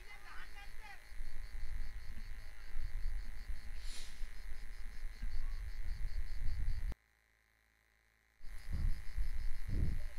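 Outdoor ambience: a steady low rumble with faint distant voices. It cuts out to total silence for about a second and a half near the end, then returns.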